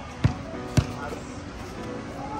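A basketball being dribbled on a hard court: two bounces in the first second, about half a second apart, then the dribbling stops. Faint music sits underneath.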